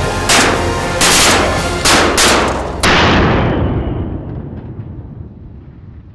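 Five shotgun shots in quick succession over background music, fired at flying wood pigeons, each one ringing on briefly. After about three seconds the shots and music fade away.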